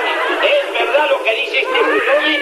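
Several voices shouting and laughing over one another, with the thin, narrow-band sound of an old television recording.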